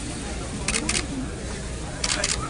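Camera shutter clicking twice in quick succession about a second in, as a group is photographed, over background voices.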